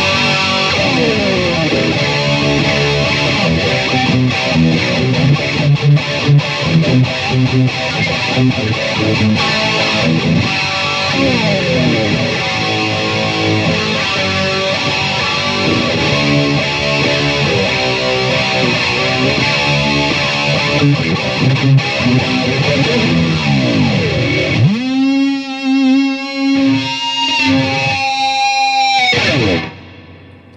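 Electric guitar played solo: busy lead playing with quick runs of notes, then from near the end a few long held notes with wide vibrato before the playing stops abruptly.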